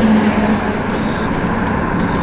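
Steady engine and tyre road noise heard inside the cabin of a moving car, with a low held tone that fades about half a second in.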